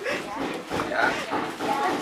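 A man speaking, with a rougher, noisier stretch around the middle that may be a background sound in the room.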